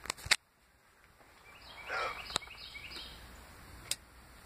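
A bird calling outside, a short run of high chirped notes about two seconds in, over quiet background, with a few sharp clicks.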